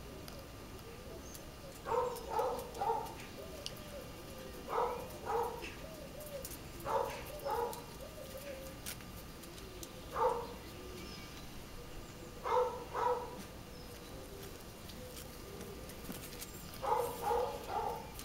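A dove cooing, short phrases of two or three notes repeated every few seconds.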